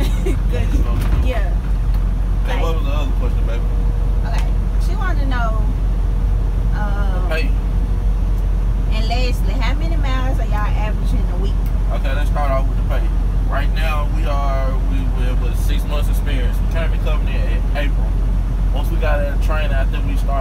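Steady low rumble of a semi truck's engine and road noise, heard from inside the moving cab, with people talking over it.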